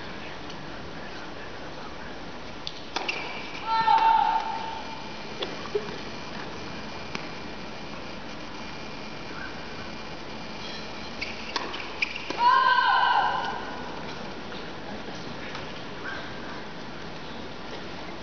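Tennis arena ambience: a steady crowd hush with scattered sharp clicks of a tennis ball being bounced and struck. Two short, high shouted voice calls cut through, about four seconds in and again about twelve seconds in.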